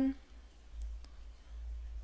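Faint clicks from a metal crochet hook working a single crochet stitch in cotton yarn, a couple of them about a second in, over a low steady hum.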